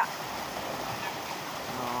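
Shallow river running over rocks: a steady rush of flowing water. A short spoken 'oh' comes near the end.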